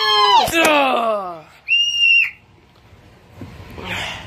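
A voice letting out a long scream that falls in pitch, followed by a short, high, steady whistle tone of about half a second.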